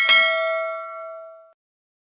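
Notification-bell 'ding' sound effect for a clicked bell icon: one struck, bell-like tone that rings out and fades away over about a second and a half.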